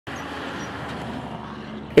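Semi-truck with a flatbed trailer driving past: a steady rush of engine and tyre noise that eases slightly in the second half.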